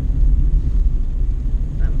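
Steady low rumble of a car being driven, engine and road noise heard from inside the cabin. A short spoken word comes in near the end.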